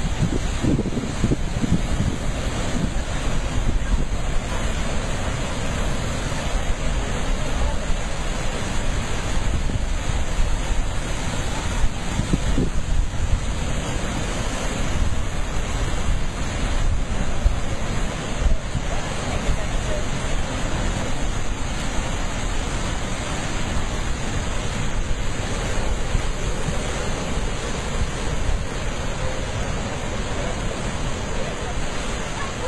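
Heavy ocean surf surging and churning against a rocky shore, a steady rush of whitewater, with wind buffeting the microphone.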